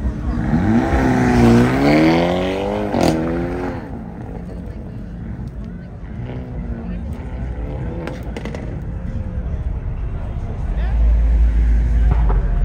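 Hyundai Elantra N's turbocharged four-cylinder engine revving hard as the car launches away, its pitch climbing, dipping once and climbing again before the throttle lifts about three and a half seconds in, with a sharp crack just before. The engine then carries on fainter and rising and falling as the car works through the cones.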